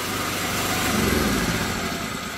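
Tiger 2500-watt petrol generator engine running as its key is turned to shut it off. A low shuddering rumble swells in the second half as the engine runs down.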